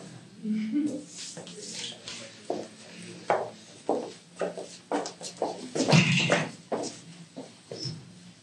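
Indistinct, off-microphone talk mixed with short handling and movement noises, with a louder burst about six seconds in.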